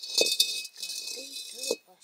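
A large iron kadai (wok) being shifted on the stone hearth, its metal scraping and rattling against the stones in two rough stretches with a short break between. A voice says a word near the end.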